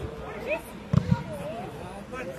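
Voices calling out across the pitch. About a second in come two dull thumps in quick succession as the football is struck.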